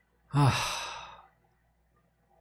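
A man sighs once: a short voiced start, then a breathy exhale that fades out over about a second.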